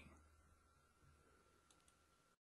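Near silence: faint room tone with a thin steady hum and a few faint computer-mouse clicks near the end.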